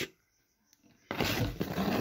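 Corrugated plastic air hose of an electric paint sprayer being handled and pulled from a cardboard box, a rustling, rubbing noise that starts about a second in after a brief silence.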